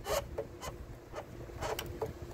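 Hand handling a 1950s Trav-Ler portable tube radio, several short scrapes and clicks of fingers on its side thumbwheel knob and case.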